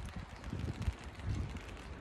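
Wind buffeting the phone's microphone: a faint, uneven low rumble.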